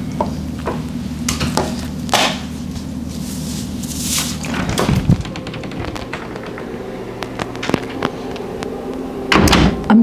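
Scattered knocks and thunks over a steady low hum that stops about five seconds in, with a heavier thump at that point and a louder knock near the end.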